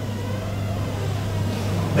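A steady low hum under an even background rumble.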